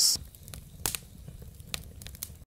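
A fire burning: a low, steady rumble with a couple of faint crackles.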